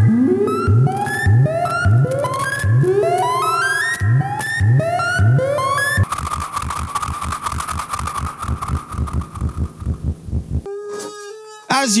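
Analogue modular synthesizer (a 1970s Practical Electronics DIY build) playing electronic sounds. First comes a repeating run of short notes, each swooping upward in pitch, about two a second. Then a fast rhythmic pulsing noise. Near the end a steady tone with crackles, which comes from its tarnished potentiometers.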